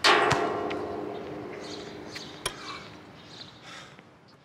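Outdoor basketball hoop's metal rim and backboard slammed by a dunk: a loud clang, then the hoop ringing on and slowly dying away over about three seconds. A basketball bounces on the court just after the slam, and there is another sharp knock about two and a half seconds in.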